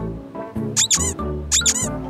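Light, cheerful children's background music, with two short, very high squeaks about three-quarters of a second apart near the middle.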